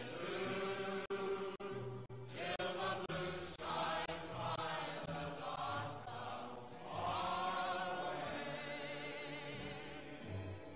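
Background music of sung voices holding long, wavering notes, choir-like or chanted, with a few brief breaks in the first few seconds.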